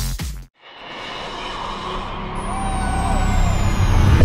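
Outro sound effect: after a short gap, a rushing swell with a deep low rumble builds steadily in loudness, with a thin whistle falling slowly in pitch over its second half.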